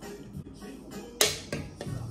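A man gulping from a tall can of malt drink, with a sudden short splutter about a second in as the drink splashes back over his face, and a smaller one just after. Background music plays throughout.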